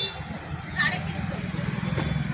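A vehicle engine running nearby with a steady low drone, under background voices; a brief high voice-like call sounds just under a second in.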